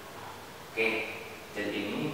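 A man's voice speaking in two short stretches, about a second in and near the end, with quieter pauses around them.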